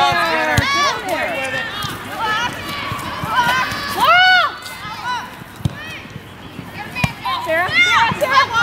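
Sideline and on-field voices at a youth soccer game, many overlapping high-pitched shouts and calls, with one loud drawn-out yell about four seconds in. A few short dull thumps come through.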